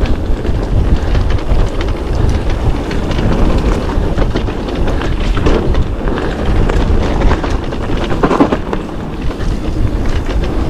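Mountain bike riding down a rough trail: wind buffeting the microphone over a steady rumble of tyres on the ground, with frequent clatters and knocks from the bike. A burst of louder rattling comes a little past eight seconds in.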